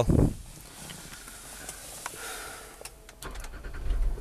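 Quiet cabin of a Land Rover Discovery 4 with a few small clicks of handling. Near the end a low steady hum comes in as the engine start/stop button is pressed.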